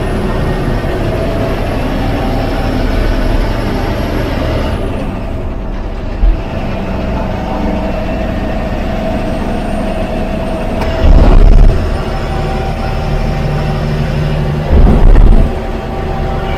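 Ashok Leyland tourist bus's diesel engine and road noise heard from the driver's cab while it drives steadily along a highway. Two short, loud low thumps come about eleven and fifteen seconds in.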